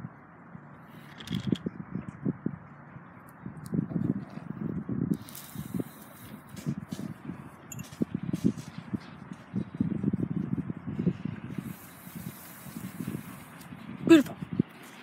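Walking on concrete while holding a phone and dog leashes: irregular low thumps of footsteps and handling on the microphone over a steady outdoor hiss, with two brief stretches of brighter rustling.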